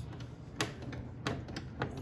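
Wooden lid of a Gulbransen baby grand piano knocking and clicking on its hinges as it is lifted and wiggled, four sharp clicks at uneven spacing. The lid sits wobbly on its hinges.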